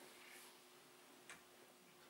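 Near silence: room tone of a hall with a faint steady hum, broken by one faint click a little past halfway.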